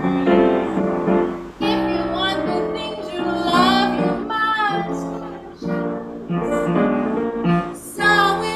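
A woman singing a jazz song while accompanying herself on piano, in phrases with short breaths between them.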